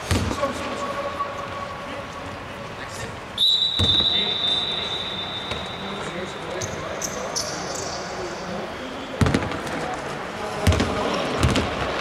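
A basketball bouncing on a hardwood court, with scattered thumps. A single long, high steady tone starts about three and a half seconds in and fades over about two seconds.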